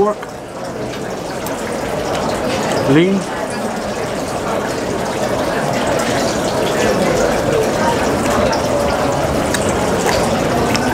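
Steady rushing noise like running water, unbroken throughout, with a man saying one word about three seconds in.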